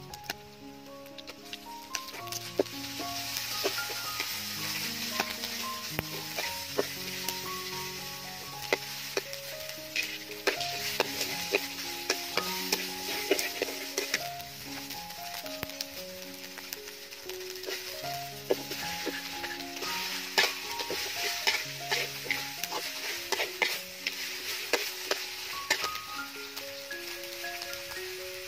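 Chili, garlic and paste frying in oil in a large steel wok, the sizzle growing louder about two seconds in, with a metal spatula clinking and scraping against the wok as the food is stirred. A melodic background music track plays underneath.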